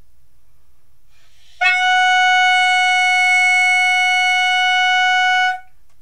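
Clarinet mouthpiece and barrel blown on their own, without the rest of the instrument, sounding one steady note near concert F-sharp, held about four seconds from about a second and a half in. This is the mouthpiece-and-barrel embouchure check, which should read F-sharp on a tuner.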